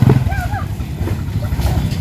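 Small motorcycle engine running as the bike pulls away, fading with distance.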